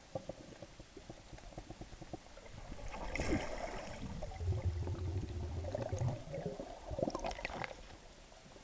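Muffled underwater sound heard through a sealed camera housing: scattered clicks and knocks, a gurgling burst about three seconds in and another near the end, and a low hum for a second or two in between.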